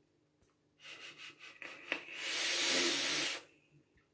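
A man taking a pull on a handheld vape: faint drawing sounds and a click, then a loud hissing breath lasting about a second and a half that stops short.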